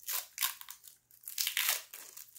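Thin cellophane, saran-wrap-type plastic, crinkling as it is peeled off a small spool of ball chain, in a few short crackly bursts.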